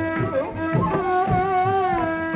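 Carnatic bamboo flute playing the raga Reethigowla melody, the notes bending and gliding between pitches over a steady drone, with mridangam strokes beating underneath.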